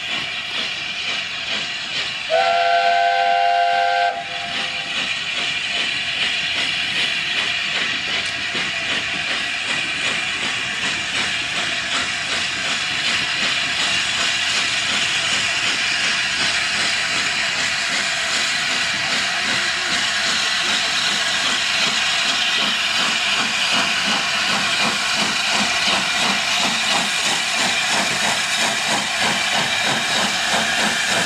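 LNER A4 steam locomotive 4464 Bittern's chime whistle sounding a chord once, for under two seconds, about two seconds in. Then steady steam hiss and the beat of the locomotive's exhaust as it moves its train forward slowly.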